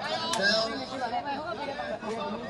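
Several people talking over one another, with a single sharp knock about a third of a second in.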